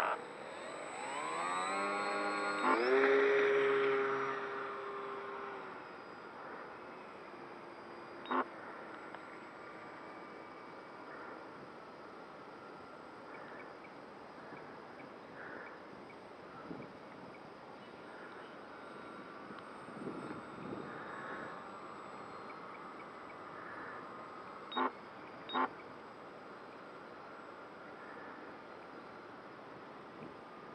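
Telemaster 40 RC model airplane's motor throttling up for takeoff, its pitch rising over a couple of seconds, holding steady, then fading as the plane climbs away into a faint distant drone. A few sharp clicks are heard, one about eight seconds in and two close together near the end.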